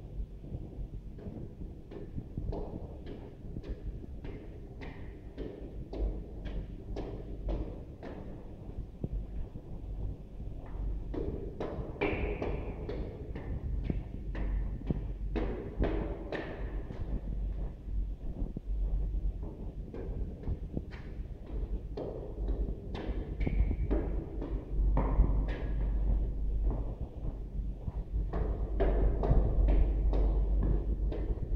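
Footsteps climbing a stairwell at a steady pace, about two steps a second, over low rumbling and knocking from the handheld camera and monitor being carried. The steps grow somewhat louder toward the end.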